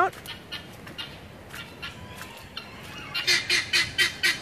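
Poultry calling: faint scattered calls at first, then, about three seconds in, a close rapid run of short harsh calls, about five a second.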